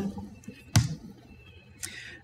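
A single sharp keyboard keystroke about three-quarters of a second in, the Enter key running a typed terminal command, over quiet room tone; a fainter brief noise follows near the end.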